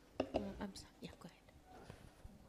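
A few soft, near-whispered words from a person's voice, followed by a few faint clicks.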